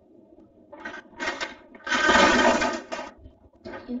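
A cardboard game box being handled and tipped onto its side, with the game pieces inside shifting and rattling. There are two short rattles about a second in, then a louder, longer one lasting about a second in the middle.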